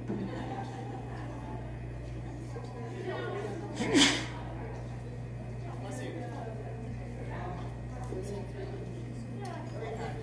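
Faint talk in a hall over a steady electrical hum, broken about four seconds in by one loud sneeze. The tune has not started yet.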